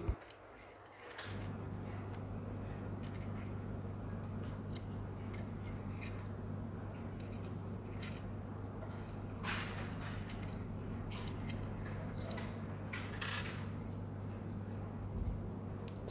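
Small metal clicks and scrapes of a key turning the battery compartment cap of a folding triplet eye loupe, with louder scrapes about nine and a half and thirteen seconds in, over a steady low hum.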